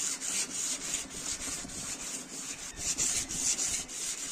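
A one-inch iron flat chisel being rubbed back and forth on a sharpening stone: a steady scraping of steel on stone, repeated stroke after stroke.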